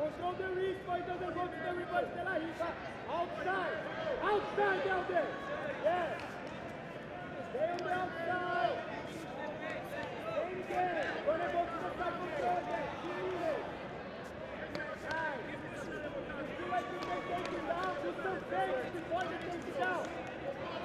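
Many overlapping voices in a large indoor hall: shouting and talk from the people around the mats, with nothing clear enough to make out.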